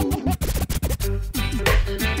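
DJ scratching a record over music: quick, choppy back-and-forth pitch glides cut on and off, as the mix moves from one song into the next.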